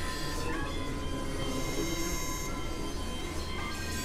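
Experimental electronic noise music: layered synthesizer drones, with many steady high tones held over a dense noisy bed and a strong low hum, at an even level throughout.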